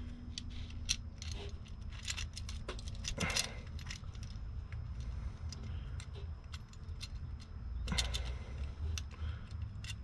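Light metallic clinks and clicks at irregular intervals as a metal sway-bar bushing clamp is handled and worked into place against the car's rear beam, over a low steady background hum.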